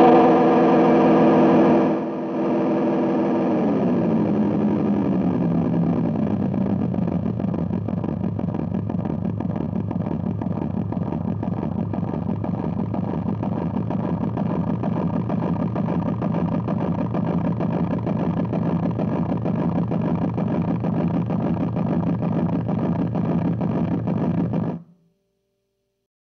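Mr. Chord Time Machine delay pedal feeding back on itself through a Vox AC15 amp: a wavering pitched drone whose pitch slides down over a few seconds as the delay knob is turned, settling into a steady, rapidly pulsing drone that cuts off suddenly near the end.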